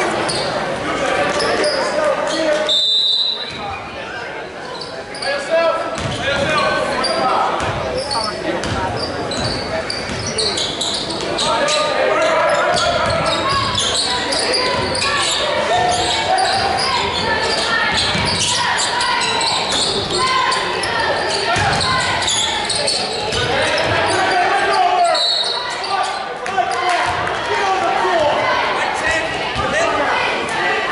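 A basketball bouncing on a hardwood gym floor during play, under unintelligible voices of players and spectators, all echoing in a large gymnasium.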